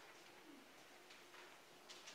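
Near silence: room tone with a faint steady hum and a light tick near the end.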